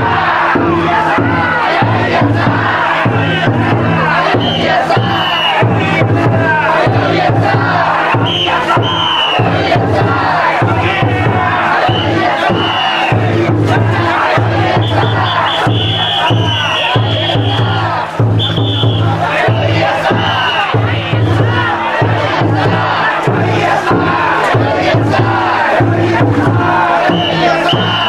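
A festival float's drum beaten in a steady repeated rhythm, under the loud chanted shouts of the crowd of carriers shouldering the float.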